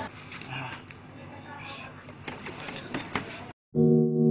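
Low background noise of indistinct voices with a few scattered clicks. About three and a half seconds in it cuts to a brief dead silence, and loud music starts just before the end.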